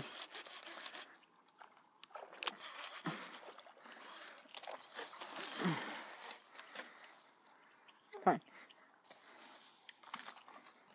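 Insects trilling steadily in one high, faintly pulsing tone. A brief burst of rustling comes about five seconds in, and there are a few short voice sounds.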